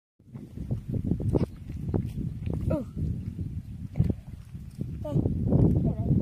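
Uneven rumbling of wind on the microphone outdoors, with scuffs and knocks and a few short pitch-bending vocal sounds.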